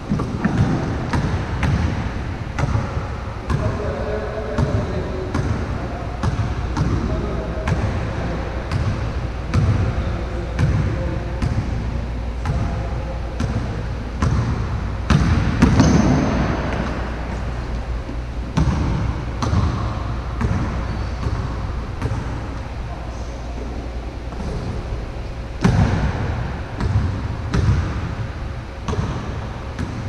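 A basketball being dribbled on a court: repeated bounces at a steady pace, about one to two a second.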